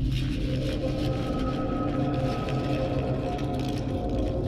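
Dark, droning film score with a rumbling, hissing sound effect that swells in at the start and carries on under the held low tones.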